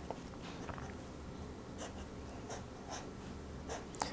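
Fountain pen nib scratching across paper in a few short, faint strokes as ink lines are drawn.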